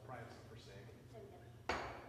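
Faint murmured voices over a steady low hum, then a single sharp knock of a hard object near the end, the loudest sound, with a brief ring.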